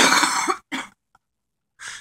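A man's short, breathy laugh: one loud burst of breath about half a second long, then a shorter one.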